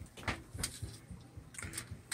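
Aluminium foil being handled: faint, irregular crinkles and small clicks.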